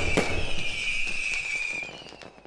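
Fireworks: two sharp bangs at the start, then a long whistle sinking slowly in pitch over crackling, fading away near the end.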